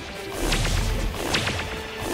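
Cartoon shape-shifting sound effects: a quick series of sharp whip-like snaps and swishes over a low rumble, with background music.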